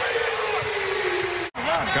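Arena crowd noise after a made three-pointer, with one long tone sliding slowly down in pitch. It cuts off abruptly about one and a half seconds in.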